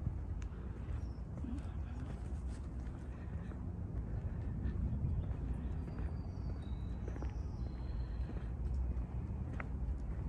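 Outdoor ambience: a steady low rumble of wind on the microphone, with faint footsteps of someone walking on pavement.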